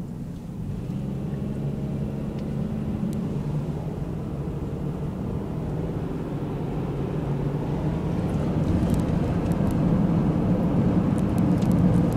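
Inside a moving car: a steady low hum of engine and road noise that grows gradually louder.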